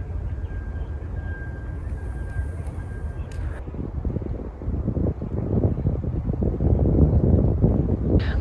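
Wind buffeting the microphone: a low rumble that grows louder and gustier after about four seconds. A faint steady high tone sounds over it for the first three and a half seconds, then stops.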